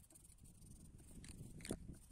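Near silence, with a few faint ticks near the end.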